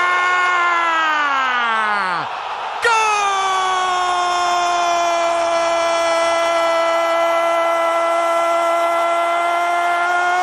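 A Spanish-language football commentator's goal call: a drawn-out shout falling away over about two seconds, then after a quick breath one long 'gol' held at a steady high pitch for about seven seconds, announcing a goal just scored.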